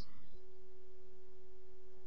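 A steady pure tone at a single low-mid pitch sets in about a third of a second in and holds without change.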